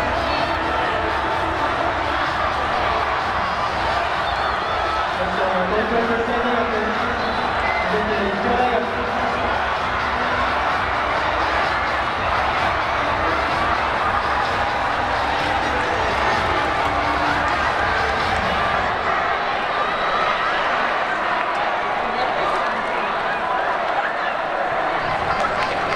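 Spectators shouting and cheering, many voices at once in a continuous, steady mass.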